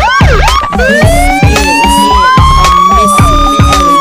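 Hip hop DJ mix with a siren sound effect over a drum beat and heavy bass. A few quick swooping wails come first, then one long, slowly rising wail that peaks just before the end and starts to fall.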